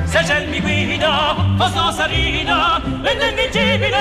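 Bel canto opera: a high voice sings several short phrases with strong vibrato over orchestral accompaniment.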